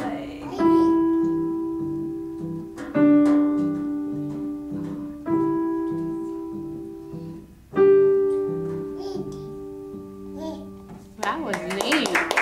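Beginner playing a slow melody on a digital piano: four long held notes struck about two seconds apart, each dying away, over a quieter repeating lower pattern. Near the end the playing stops and clapping and voices follow.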